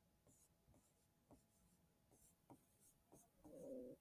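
Faint pen strokes on a whiteboard as words are written, soft scratches and ticks, with a brief faint low murmur near the end.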